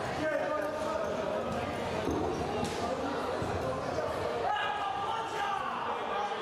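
Several people talking and calling out over one another in a large, echoing sports hall.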